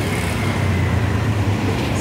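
Steady road traffic noise on a city street: a continuous low rumble of vehicle engines.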